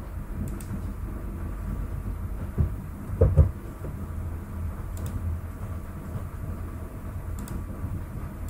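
Steady low electrical hum of the recording microphone, with a few faint mouse clicks as points are placed and a short low thump a little over three seconds in.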